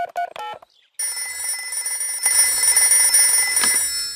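Mobile phone keypad beeping as a number is dialled, a quick run of short beeps, then after a brief pause a steady electronic ringing for about three seconds while the call rings through.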